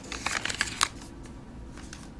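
A sheet of paper, the printed instruction sheet, rustling and crackling in a quick flurry of handling during the first second.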